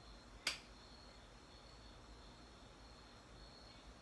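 Near silence: room tone with a faint high-pitched whine, broken by a single sharp click about half a second in.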